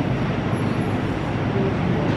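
Steady rumbling rattle of a shopping cart's wheels rolling over a store floor.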